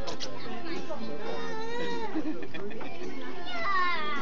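Several children and adults talking over one another, with high-pitched children's voices calling out; no single voice stands clear.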